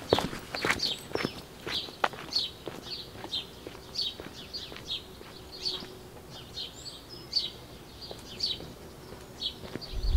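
Small birds singing, short high chirps repeated a couple of times a second throughout. Footsteps on a paved path sound in the first two seconds or so.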